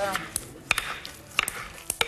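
Metal hand-held potato masher pressing through boiled potatoes and lentils in a glass bowl, clinking against the glass with about four sharp, irregular ticks.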